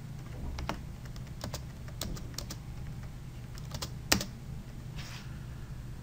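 Computer mouse button clicking about eight times at irregular intervals, ticking checkboxes one by one; the loudest click comes about two-thirds of the way through. A low steady hum runs underneath.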